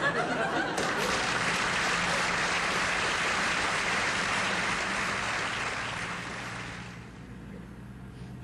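Studio audience applauding, dying away near the end.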